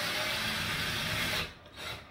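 A steady rasping, rubbing noise that cuts off suddenly about one and a half seconds in.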